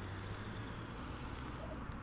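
Steady low rumble with a faint even hiss of background noise between words.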